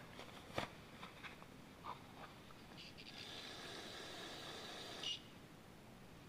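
Faint hiss of an aerosol can of carb cleaner spraying into a carburetor float bowl for about two seconds, stopping abruptly, preceded by a few light handling clicks.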